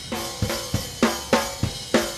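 Recorded drum track played back with the snare hitting about three times a second. It is heard through a plugin EQ with a heavy high-frequency boost, which gives it the bright, brittle top end that was just pointed out.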